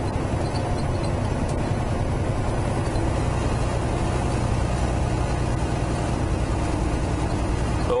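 Semi truck's diesel engine and road noise heard from inside the cab while driving at a steady speed: a continuous low drone.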